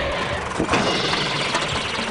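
A light truck's engine running as it pulls up close on a dirt track, with a rushing noise of tyres on loose ground and a single knock about a third of the way in.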